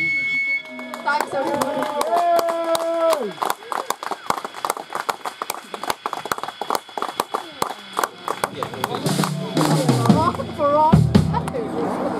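Audience clapping just after a live punk song ends, a dense run of handclaps lasting several seconds, with shouts and talking over it at the start and near the end.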